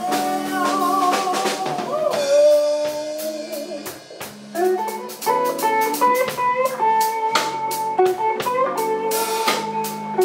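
Live blues band: a woman's sung note held and wavering over the first couple of seconds, then an electric guitar solo of shifting, bent notes from about five seconds in, over a drum kit keeping a steady beat.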